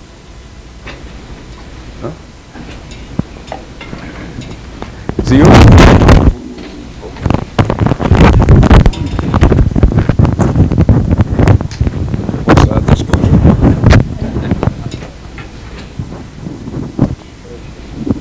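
Clip-on lapel microphone being handled and rubbed against a shirt: loud muffled rustling and thumps, starting about five seconds in and going on in irregular bursts.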